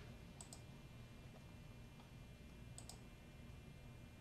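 Faint computer mouse clicks: two quick double-clicks, one about half a second in and another near three seconds, as folders are opened in a file browser.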